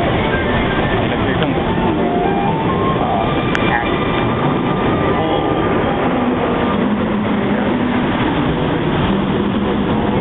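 Bellagio fountain jets shooting water with a steady, loud rushing noise, with the show's music playing underneath.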